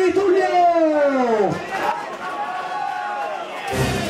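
A ring announcer's amplified voice drawing out the end of a fighter's name in a long call that falls in pitch, over crowd noise in a large hall. A low thump comes near the end.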